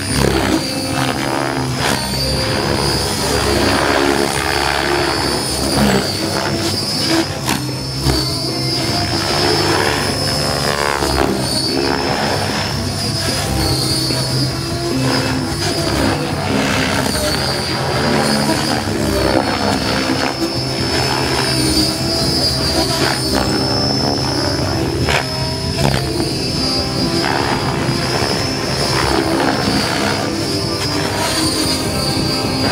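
Electric RC helicopter (Compass 7HV) flown hard through 3D aerobatics: the rotor blades swish and chop, the sound rising and falling as the pitch is thrown back and forth, over a steady high whine.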